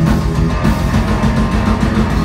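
Heavy metal band playing live and loud: distorted electric guitars, bass guitar and drums in a passage without vocals.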